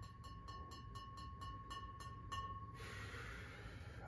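Faint background with a steady high whine and fine regular ticking, then near the end about a second of a person's breathy exhale.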